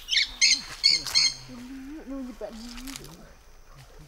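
Four loud, sharp bird squawks in quick succession in the first second and a half, followed by a person's voice calling or speaking in drawn-out, wavering tones.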